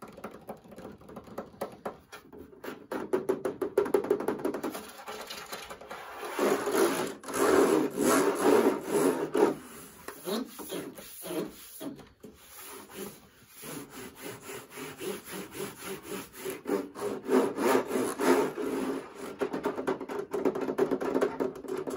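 Fingers scratching and rubbing fast over the plastic casing of a tower fan: a dense, quick run of strokes, louder for a few seconds about seven seconds in and again near the end.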